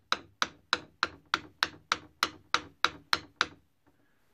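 A hammer tapping a soft copper jump ring flat on a metal block, with about a dozen light, even strikes at roughly three a second, each ringing briefly. It stops near the end.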